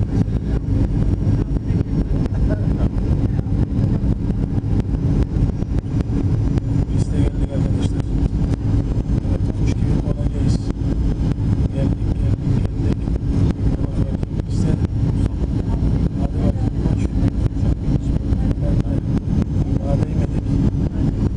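Steady rumble of an airliner's engines and rushing air heard inside the passenger cabin, with a steady hum underneath, through the final approach and onto the runway.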